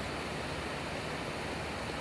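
Steady, even background hiss in a pause between sentences, the room and recording noise under the voice.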